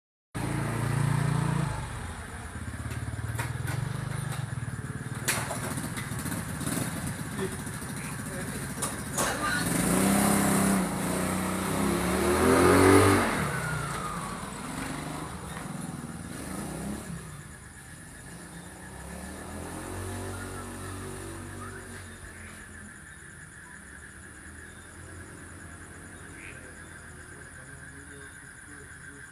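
Motor vehicle engine passing on the road, growing louder to a peak about halfway through and then fading away, with a couple of sharp clicks early on.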